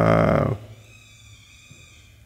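A man's drawn-out hesitation vowel 'aah' that trails off about half a second in, then quiet room tone with a faint steady high hum.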